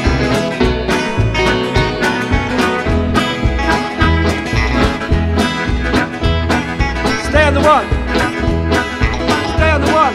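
Live blues band playing an instrumental passage on double bass, drums and guitars, with an electric guitar lead on top. A lead line bends its notes up and down about seven seconds in and again near the end.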